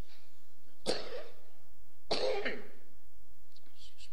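A man coughing twice, once about a second in and again, a little longer, about two seconds in.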